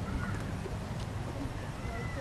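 Outdoor street ambience: a steady low rumble of traffic and city noise with faint voices of bystanders talking.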